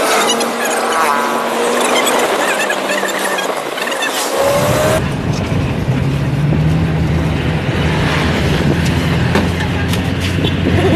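Engine and road noise heard from inside a moving vehicle, with a whine that rises in pitch now and then. About four and a half seconds in, the sound changes abruptly to a steadier, deeper engine hum.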